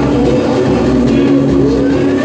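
Live samba-enredo: a group of singers on microphones sings over drums and strings, loud through a PA. Held vocal notes carry over a steady pulsing beat.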